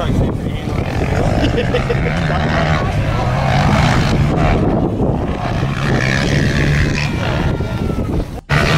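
Motocross dirt bike engines running on the track, their pitch rising and falling as the riders work the throttle and shift.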